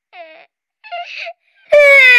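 A high-pitched voice gives two short whimpers, then breaks into a loud, long wail near the end that sinks slightly in pitch.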